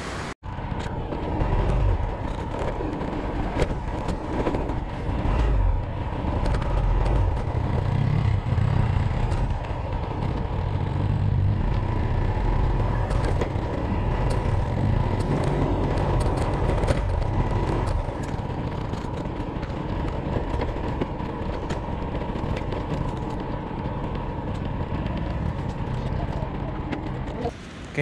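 Motorcycle riding along a dirt track: the engine runs steadily under a loud, uneven rumble of wind on the microphone.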